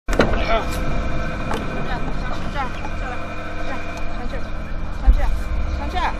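Car door handle pulled and the latch clicking open, with voices talking in the background and a low thump about five seconds in.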